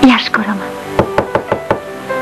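Rapid knocking, about six sharp knocks in under a second, most likely on a door, over soft background music.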